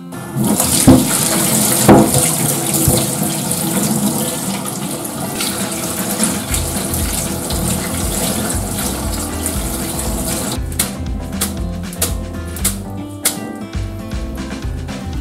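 Tap water running into a stainless steel strainer while cooked noodles are rinsed and rubbed by hand in the sink, to cool them for cold noodles. The water stops about ten seconds in, followed by a few sharp knocks.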